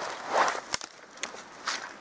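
Footsteps crunching through dry grass and leaf litter, a few separate steps with the loudest early, and one sharp click about three-quarters of a second in.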